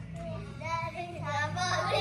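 Young children's voices singing faintly in short phrases, quieter than the adult speech around them.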